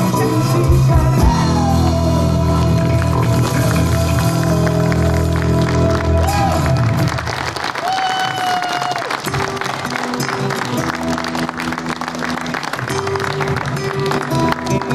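Live band music: a man singing over a nylon-string acoustic guitar with full sustained low chords from the band. About halfway through the heavy low backing drops out and lighter guitar picking carries on under a held sung note.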